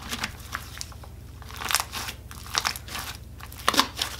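A large mass of mixed slime being stretched, pulled and squished by hand in a glass bowl, crackling and popping in short bursts about once a second, the loudest burst near the end.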